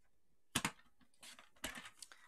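Paper trimmer cutting cardstock: two sharp clicks about half a second in, then a short scratchy slide of the cutting blade near the end.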